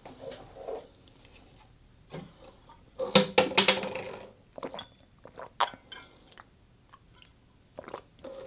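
Swallowing gulps of water from an insulated bottle, heard close up, with the bottle knocking and clicking as it is handled.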